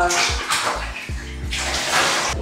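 Water poured from a jug splashing into a filled bathtub while rinsing a child's hair, over background music.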